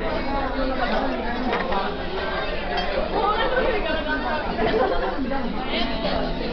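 Background chatter: several people talking at once, with overlapping conversation and no single clear voice.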